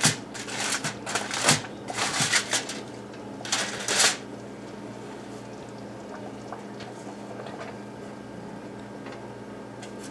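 Aluminium foil crinkling in several rustling bursts over the first four seconds as it is pulled off a glass baking dish, followed by a faint steady hum.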